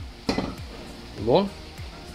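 A man's voice in two short bursts, with faint music in the background.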